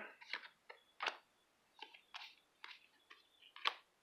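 Magic: The Gathering cards being flipped one by one through a hand-held stack: a string of faint, irregular snaps and ticks of card stock, about ten of them, the loudest near the end.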